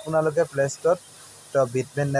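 A person talking: running speech that the recogniser did not write down.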